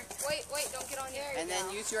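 Background chatter of children's voices, with no clear words.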